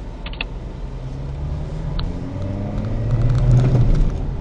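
Car engine heard from inside the cabin, revving up as the car pulls away and accelerates, its pitch and loudness rising over about three seconds. A couple of short sharp clicks sound near the start and about two seconds in.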